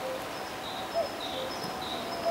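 Birds chirping outdoors: a short hooked call repeats about once every second and a bit, with fainter higher chirps between, over a steady background hiss.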